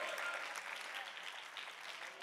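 Congregation applauding, the clapping fading away.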